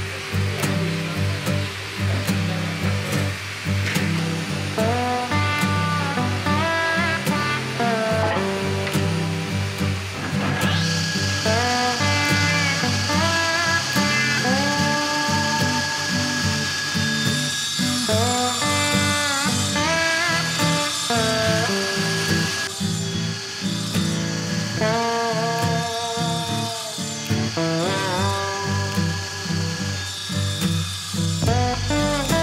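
Background music, with the steady high whine of a table saw running and cutting wood from about ten seconds in.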